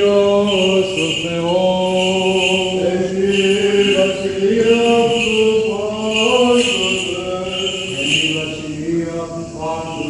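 Byzantine chant sung by male chanters: a melody moving step by step over a steady held drone (the ison).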